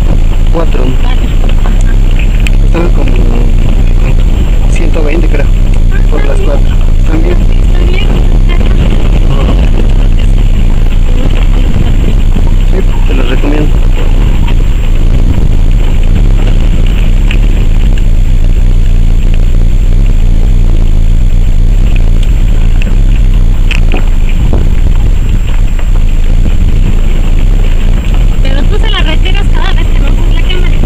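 A vehicle driving on a rough dirt road, heard from inside: steady, very loud engine and road rumble with wind buffeting the microphone at an open side window. Indistinct voices come through in places.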